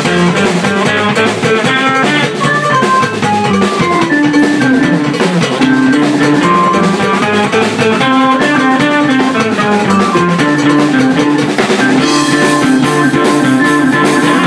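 A rock band playing live in a small room: drum kit, electric guitar and keyboard, with held melodic keyboard and guitar notes over a steady beat.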